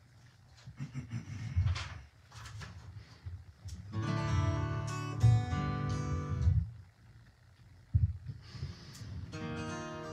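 Acoustic guitars strummed in short tries: a chord rings out for a couple of seconds about four seconds in, and another starts near the end. Soft knocks of the guitars being handled fall in between.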